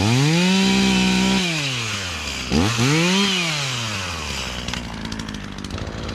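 Echo CS450P two-stroke chainsaw revved to full throttle and held there for about a second and a half, dropping back to idle. It is revved again briefly about two and a half seconds in, then idles.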